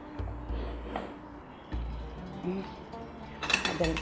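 Kitchen utensils clinking against metal cookware in a quick run of sharp clinks near the end, over soft background music.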